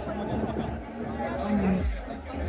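A crowd of people chatting, several voices overlapping.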